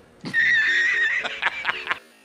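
A loud, high-pitched wavering cry held for about a second, then breaking into a quick run of short pulses.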